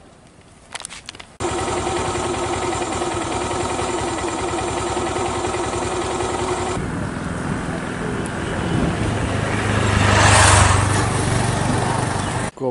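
Street traffic: a steady engine hum starts suddenly about a second and a half in, then a motor vehicle passes close by, loudest about ten seconds in.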